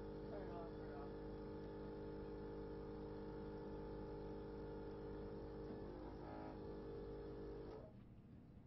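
A steady machine hum with several held tones over a low rumble, stopping suddenly near the end. Faint voices can be heard underneath.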